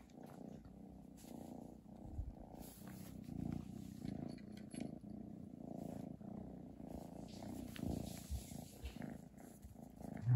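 A kitten purring steadily and quietly, close up, with a few soft knocks and clicks along the way.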